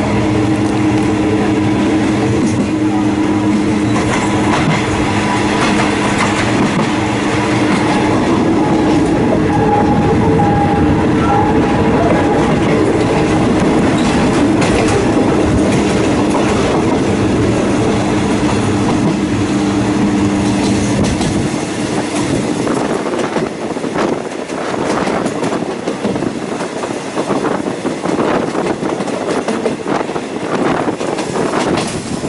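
Passenger train running, heard through an open carriage window: a steady low hum over the rush of wheels on rail. About 22 seconds in the hum drops away, and the rattling clickety-clack of the wheels over the track comes forward.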